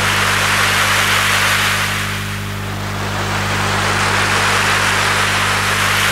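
Intro of a karaoke backing track: a held low synth chord in B-flat under a wash of surf-like noise that ebbs about two seconds in and swells again.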